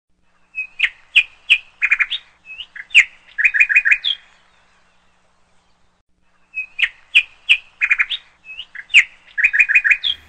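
A bird chirping: a phrase of quick chirps and short rapid trills, then a pause of about two seconds, then a matching phrase.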